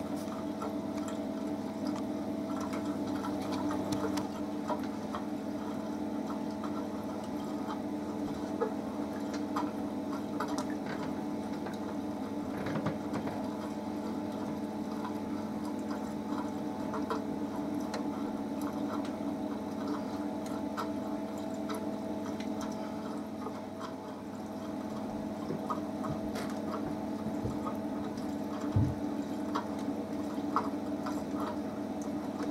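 Running reef aquarium: a steady hum from its pump under water trickling and dripping, with scattered small clicks and a low knock near the end as the light and its mounting arm are handled.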